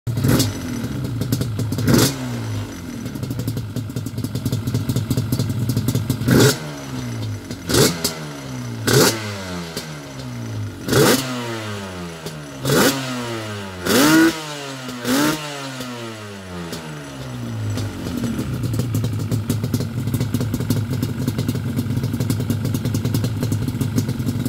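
Yamaha Banshee 350's twin-cylinder two-stroke engine idling and revved in about nine sharp throttle blips, each falling quickly back to idle. The blips come closest together in the middle, then it settles into a steady idle for the last several seconds.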